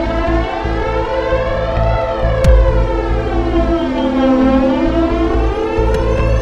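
Electronic music from a live modular-synth and guitar set: sustained drone tones swept through a filter effect whose pitch comb glides slowly down and back up over about four seconds. A single deep kick-drum hit lands about two and a half seconds in.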